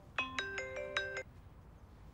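Mobile phone ringtone: a quick run of clear, chime-like notes, about five a second, that stops about a second and a quarter in.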